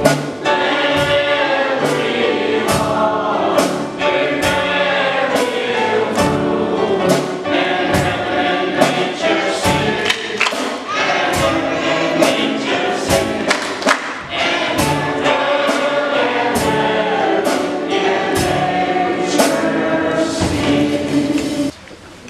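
Gospel choir singing over a steady beat; the music drops off shortly before the end.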